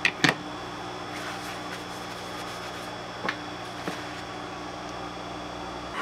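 A steady low hum, with a light knock just after the start as a circuit board is set down on the bench, and two faint ticks a few seconds later.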